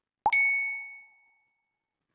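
A single ding sound effect: one sharp strike followed by a high, clear ringing tone that fades away over about a second and a half.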